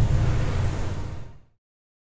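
Tail of a logo ident sound effect: a low rumble with hiss, fading out about one and a half seconds in, then silence.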